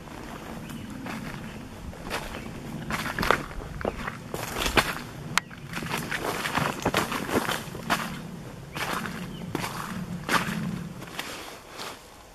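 Footsteps walking through dry fallen leaves and twigs on a forest floor, irregular steps one or two a second, with one sharp snap about five seconds in.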